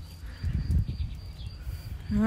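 Soft low thuds with a faint rustle as a hand handles a bunch of water celery stems close to the microphone, mostly in the first second.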